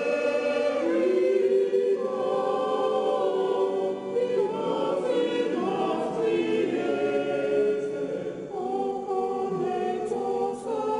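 A church choir singing, many voices together holding long notes that shift in pitch every second or so.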